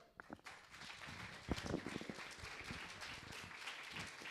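Audience applause, starting about half a second in and going on as a steady patter of claps.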